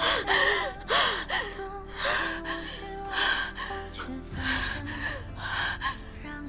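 A woman gasping for breath as she is choked by a hand at her throat: about six strained gasps, roughly one a second, over soft background music.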